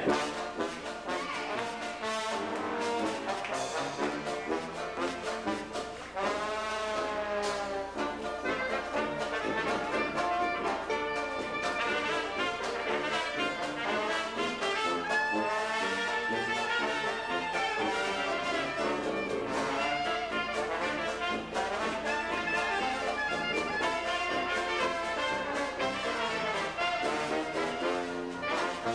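Traditional jazz band playing live, with trombone and clarinet out in front over a sousaphone. About six seconds in, a held note wavers with wide vibrato.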